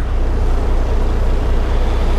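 Semi-truck diesel engine idling, heard inside the cab: a steady low drone with an even, fast pulse.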